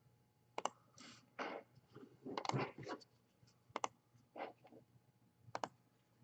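Faint, scattered clicks of a computer mouse and keyboard, a few of them in quick pairs.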